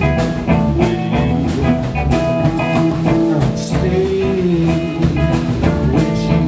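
Blues-rock band playing an instrumental passage: electric guitar, bass and drum kit keep a steady beat, with a lead line that bends up and down in pitch.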